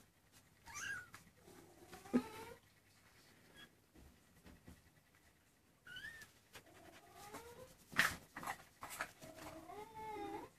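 Maine Coon kittens about three weeks old mewing: several short mews scattered through, some gliding up and down in pitch. A few sharp knocks come in between, the loudest about eight seconds in.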